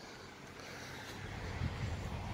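Wind rumbling on the phone's microphone: a low, uneven, fairly quiet noise that grows slightly louder towards the end.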